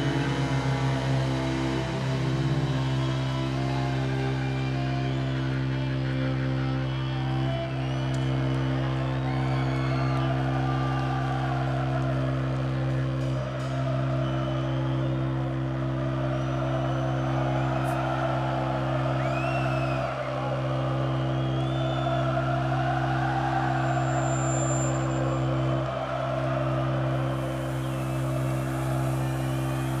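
Cellos played live through a PA: a steady, low held drone runs throughout. From about eight seconds in, crowd noise swells and falls above it, with short whistles.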